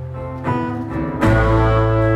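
Live band playing an instrumental passage: sustained electric guitar and keyboard chords over bass. A new chord comes in about half a second in, and a louder, fuller one with heavy bass just past a second.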